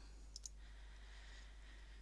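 A single faint computer-mouse click about half a second in, over near silence with a low steady hum.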